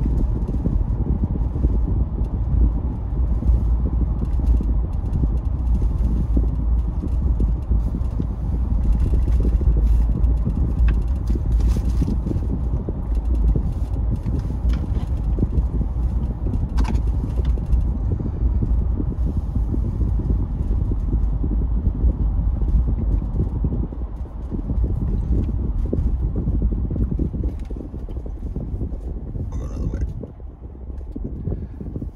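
Steady low rumble of road and engine noise inside a moving Jeep Wrangler's cabin. It drops off over the last few seconds as the Jeep slows toward a red light.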